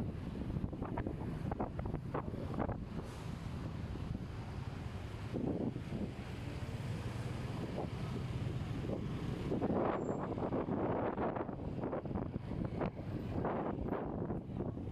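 Wind rushing over the phone microphone on a moving motorbike taxi, over a steady low rumble of engines and city traffic, with louder gusts a few times.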